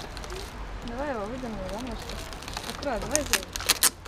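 A faint voice, then a quick run of sharp clicks and crackles near the end, from the shattered, crazed safety glass of a car's broken side window as a hand works at it.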